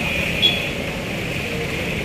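Steady outdoor background noise with a constant high-pitched whine running through it.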